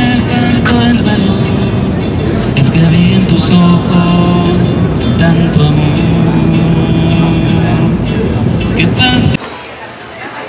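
A man sings to his own acoustic guitar, a held melody over strummed chords, with a steady low rumble of the moving ferry beneath. It cuts off abruptly just before the end.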